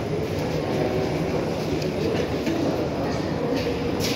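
Kazan metro train rumbling steadily beside the station platform, with passengers' footsteps ticking faintly over it.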